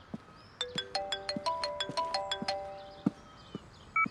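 Mobile phone ringtone for an incoming call: a melody of short bell-like notes, about a dozen of them in quick succession, which stops about two and a half seconds in. A short beep follows near the end.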